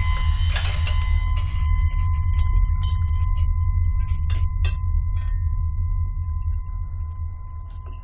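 Suspense film score: a deep, steady low drone under a thin sustained high tone, with a brief shimmering swell about half a second in. A few faint clinks sound in the middle, and the score fades over the last couple of seconds.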